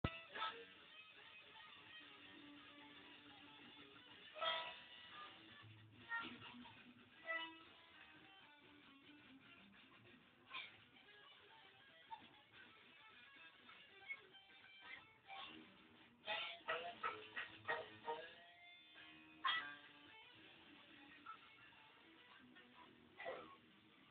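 Electric guitar played solo: single plucked notes left to ring, with scattered short phrases and a quick run of notes about two-thirds of the way through.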